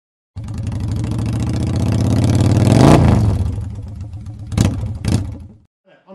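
Motorcycle engine revving, growing to its loudest about three seconds in and then fading away, with two sharp cracks near the end.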